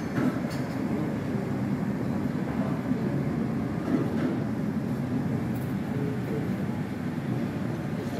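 Steady low rumble of background noise in a large buffet hall, with a faint light clink about half a second in.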